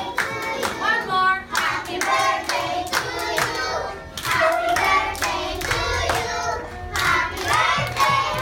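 A group of young children and a woman singing a song together, clapping along in time.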